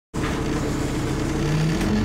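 Diesel engine of a Dennis Trident 2 double-decker bus with a ZF four-speed automatic gearbox, accelerating, its note rising steadily, heard from inside the bus.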